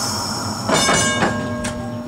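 A steady hiss of air that cuts off, then a single strike on the streetcar's gong about two-thirds of a second in, left ringing and fading, as the car is about to move off.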